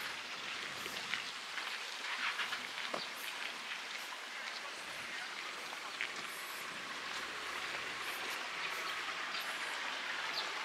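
Steady outdoor background hiss at a moderate level, with a few faint short high chirps near the end.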